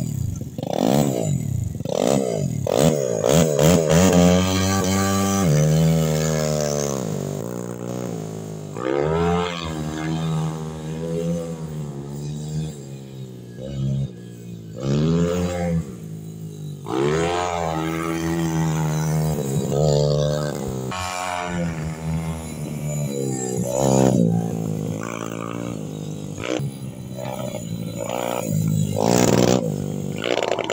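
Junior speedway bike's single-cylinder engine revving as it is ridden around the track. Its pitch rises and falls with the throttle, with louder surges every few seconds.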